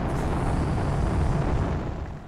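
A steady, dense rumbling noise with no clear pitch or rhythm.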